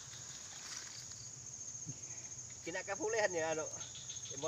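Insects trilling steadily, a high-pitched, finely pulsing buzz, with a voice speaking briefly near the end.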